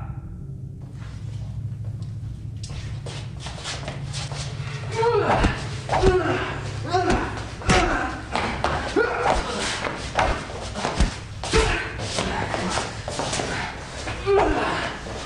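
Hand-to-hand fight: a quick run of punch and kick impacts and thuds, starting about three seconds in, with short cries that fall in pitch joining from about five seconds in, over a steady low hum.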